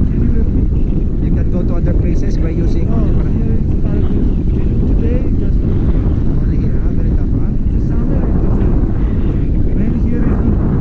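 Wind buffeting the camera microphone in flight under a tandem paraglider: a loud, steady low rumble. Faint, muffled voices come through under it now and then.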